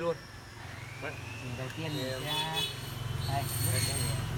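A motor vehicle's engine running with a low, steady hum that grows louder through the second half, with faint voices talking in the background.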